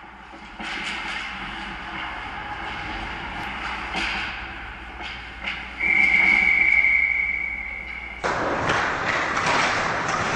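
Hockey game sound at rinkside: skates scraping the ice with sharp clacks of sticks and puck. About six seconds in, a referee's whistle blows one steady note for about two seconds while players crowd the goalie at the net. Near the end it cuts suddenly to louder game noise from another rink.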